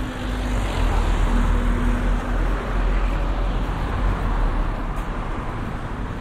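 A car driving past close by on a town street, its engine and tyre noise building about a second in and easing off toward the end.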